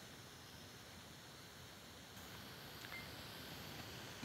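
Faint room tone: a low, steady hiss with no distinct event.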